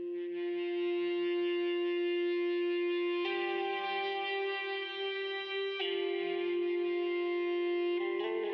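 Instrumental intro music: sustained chords with echo, the chord changing about three seconds in and again near six seconds.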